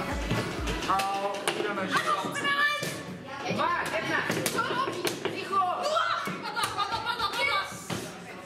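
Wooden chess pieces set down in quick succession and chess clock buttons pressed in a fast bughouse game, as many short sharp clicks and knocks. Voices and background music run underneath, with a steady deep beat that stops about a second in.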